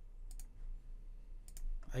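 Computer mouse clicks while selecting and deleting sketch lines: two quick pairs of clicks about a second apart, over a faint low hum.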